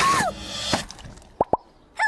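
Animated film trailer sound: a character's cry ends just after the start and a splashy noise fades out. About a second and a half in come two quick wet plops, a small water character landing, with trailer music under it.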